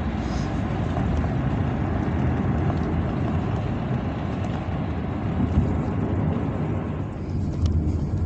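Steady road and engine noise of a moving car, heard from inside the cabin: a low, even rumble.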